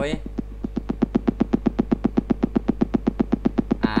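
A rapid, even pulsing buzz, about ten pulses a second, over a steady low hum.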